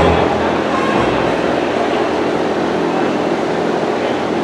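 Steady crowd hubbub echoing in a large gymnasium, with no music playing.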